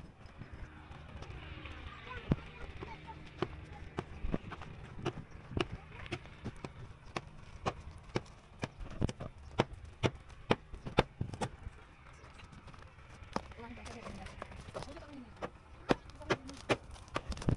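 A hammer striking the plastered wall of a house over and over, about two blows a second, the loudest blows near the middle.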